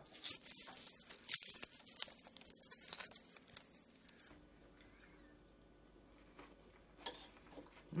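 Crisp fried bacon being crumbled by hand over a salad, a run of small crackling snaps for about the first four seconds.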